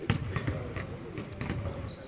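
Basketballs bouncing on a hardwood court in a large arena hall: several irregular, echoing bounces.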